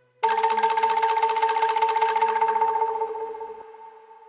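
Sampled angklung patch from a Roland JV-2080 expansion library, played as one held chord in a software sampler. The note starts a fraction of a second in with a fast, even rattling tremolo and fades out over about three and a half seconds.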